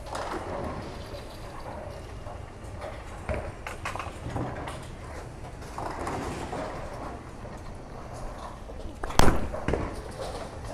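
Bowling alley background with scattered small clacks, then a loud sharp crash about nine seconds in, followed by a brief clatter: a bowling ball striking the pins.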